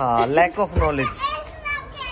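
Voices with children among them: a drawn-out, high-pitched vocal sound at the start, then short stretches of chatter.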